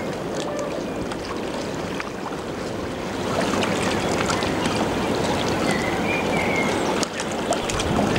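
Water rushing from an inland motor cargo ship's bow wave and wash as it passes, with wind on the microphone. The sound grows louder about three seconds in.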